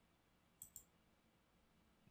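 Computer mouse button clicked: two faint clicks in quick succession a little over half a second in, otherwise near silence.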